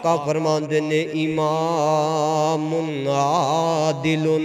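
A man's voice chanting in a drawn-out, melodic preaching style, holding long notes, with a wavering held note about three seconds in.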